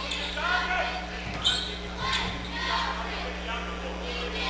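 Gym ambience at a basketball game: a basketball being dribbled on a hardwood court, with crowd voices and a steady low hum under it.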